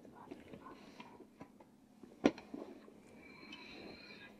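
Quiet room tone with faint, low voices and a single sharp click a little over two seconds in, with a few softer ticks around it.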